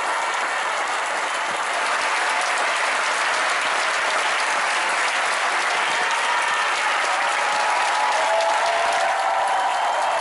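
Large arena crowd applauding steadily, a dense, unbroken clapping, with a few voices calling out over it in the second half.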